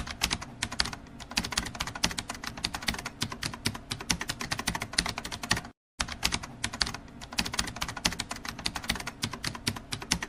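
Rapid, continuous clatter of typing keys, a typing sound effect over typewriter-style text, with one short break a little before six seconds in.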